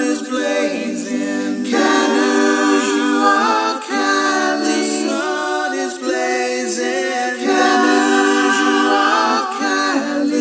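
Unaccompanied vocal group singing close harmony, holding chords that shift every second or two.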